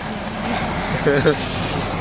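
Steady road and engine noise inside a moving van's cabin, with a short voice sound about a second in.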